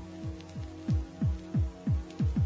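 Deep electronic kick drum beats, each dropping sharply in pitch, about three a second over a steady droning tone, growing louder about a second in: the beat of a rave track.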